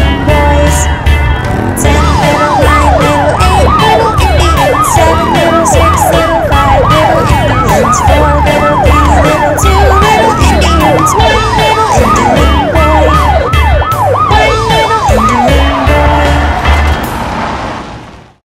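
Police car siren in a fast yelp, rising wails about three times a second, over backing music with a steady bass beat. The siren stops a few seconds before the end and the music fades out at the very end.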